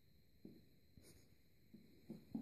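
Near silence: room tone with a few faint, soft low bumps, the muffled scuffle of a cat and a young dog tussling on carpet.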